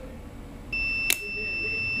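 Digital multimeter's continuity buzzer giving a steady high beep that starts about three-quarters of a second in: the washer shifter's repaired microswitch has closed and shows continuity. A sharp click sounds shortly after the beep begins.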